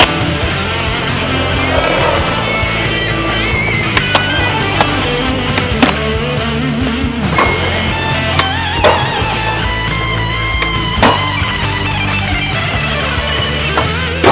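Rock music with guitar, over skateboard sounds: wheels rolling on concrete and several sharp clacks of the board popping and landing.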